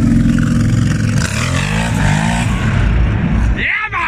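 Kawasaki KFX 700 V-Force quad's V-twin engine running under throttle in sand inside a concrete cooling tower, its pitch dipping and rising as the revs change after about a second.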